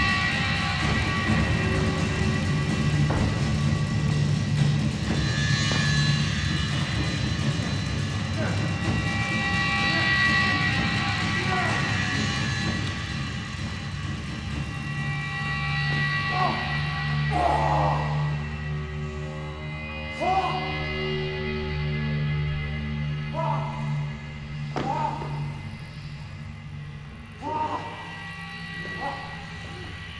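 Dramatic stage underscore music with a sustained low drone, and from about halfway through a series of short vocal outbursts from actors fighting on stage.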